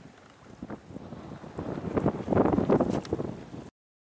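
Wind buffeting the camera's microphone in irregular gusts, building to its loudest about two to three seconds in, then cutting off suddenly near the end.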